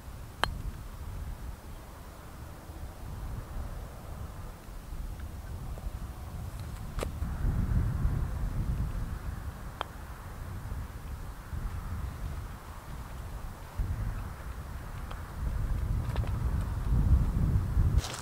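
Wind buffeting the camera microphone, a low rumble that swells and fades, with three short sharp clicks spread through it.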